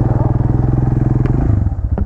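Italika RC200's 200cc single-cylinder engine pulling away at low speed. It speeds up for about a second and a half, then eases back to a slower, even beat.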